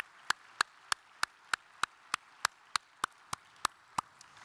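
One person's hand claps close to the microphone, steady and even at about three claps a second, stopping shortly before the end.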